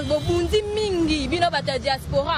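A voice drawing out a word in a long held syllable that slides slowly down in pitch, over a low rumble of street noise.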